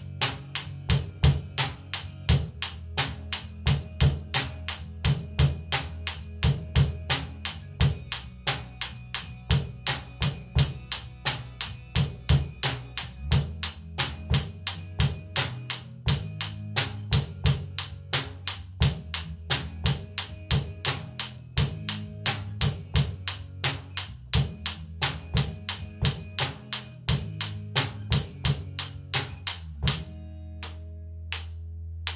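A student playing a steady rock beat on a small acoustic drum kit, with bass drum, snare and cymbal strokes about three or four a second, along with a backing track for a Debut grade drum exam piece. The drumming stops at the end, leaving the backing music.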